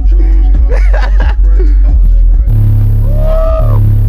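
Bass-heavy music with vocals played loud through two Skar Audio subwoofers wired at a 1-ohm load, heard inside the car. The deep bass runs throughout and gets heavier from about halfway.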